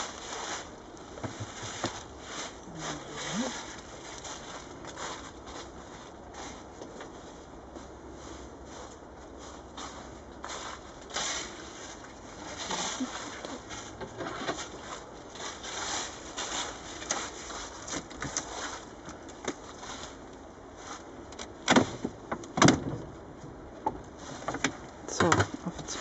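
Irregular crackling, clicking and scraping of people moving about and handling things, with brief snatches of voice about 22 seconds in and again at the very end.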